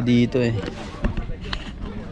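A man's voice for the first half-second, then low outdoor background with a single knock about a second in.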